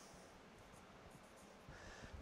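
Faint sound of a dry-erase marker writing on a whiteboard, barely above room tone, with a faint squeak near the end.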